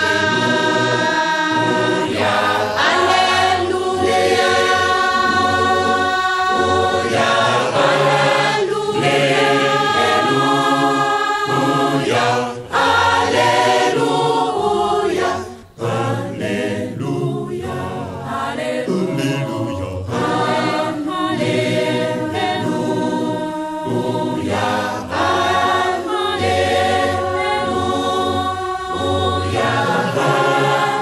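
A choir singing a Kimbanguist hymn in Lingala, many voices in harmony. The singing breaks off briefly twice near the middle.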